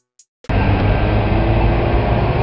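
City street traffic noise with a bus close by: a steady low rumble and hiss that starts suddenly about half a second in.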